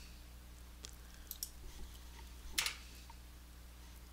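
A few faint computer mouse clicks, scattered, the loudest about two and a half seconds in, over a low steady hum.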